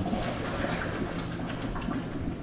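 Tap water running over cooked pasta shells in a colander in the kitchen sink, a steady splashing hiss.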